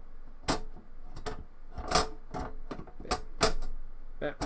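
A hard drive being slid and nudged into a sheet-metal drive cage: a run of irregular sharp clicks and knocks, several loud ones among lighter taps.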